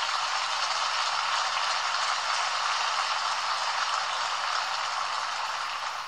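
Audience applause heard thin and narrow, as through a telephone or radio line, steady and then tapering off near the end.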